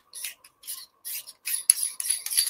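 Metal camera reversing ring and adapter ring being handled and threaded together by hand: a run of short scratchy scraping sounds, about two or three a second, with a sharp click near the end.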